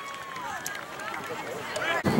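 Distant voices of players and onlookers calling out across an open soccer field, with one long, drawn-out shout in the first half-second.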